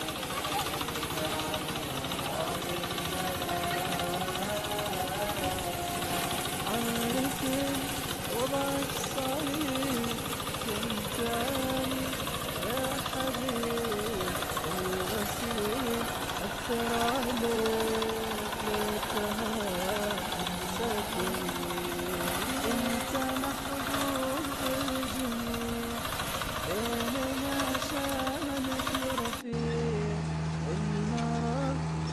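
Farm harvesting machinery running with a continuous loud clatter, with a voice over it. The sound cuts off abruptly just before the end.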